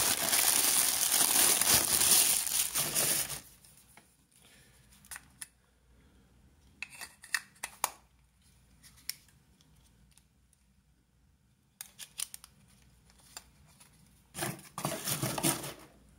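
Plastic bag crinkling loudly as a camera lens is unwrapped, for about three seconds, then a series of faint clicks and taps as the bare lens is handled. Louder rustling returns near the end.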